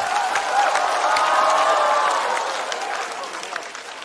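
Studio audience applauding, with a few voices calling out over the clapping; the applause dies away toward the end.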